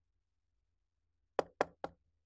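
Three quick knocks on a door, coming in the second half.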